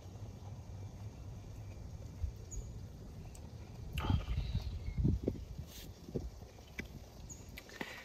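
Low wind rumble on the microphone, with a short breathy sound about four seconds in and a few soft knocks just after.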